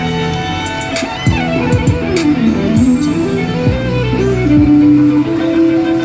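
Electric violin playing a melody over backing music with a beat and bass. The violin line slides down and back up, then settles into two long held notes near the end.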